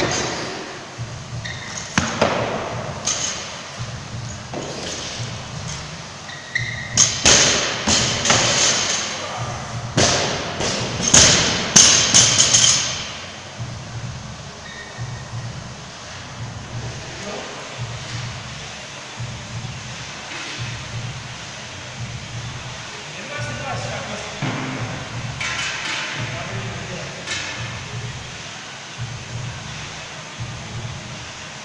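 Loaded barbells with bumper plates being dropped and set down on a gym floor during squat cleans: loud thuds and clanks with a metallic ring, a few in the first seconds and a dense run from about 7 to 13 seconds in, then quieter.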